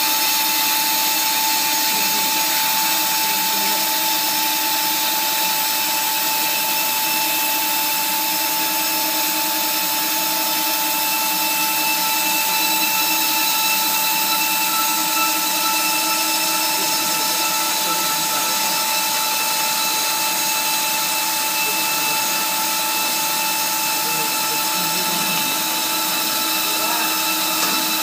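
Protective-film roll cutting machine running, its circular blade cutting through a spinning roll of plastic film: a steady machine whine of several held tones over a hiss.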